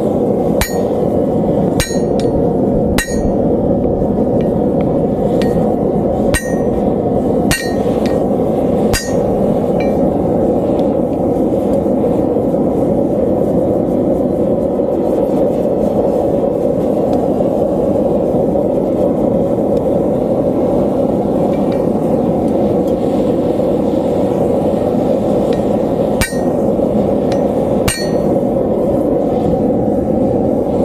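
Hammer blows on a flatter held against hot leaf-spring steel on an anvil, each with a short metallic ring: six blows in the first nine seconds, then two more near the end. Under them the steady rush of the gas forge's burner runs without a break.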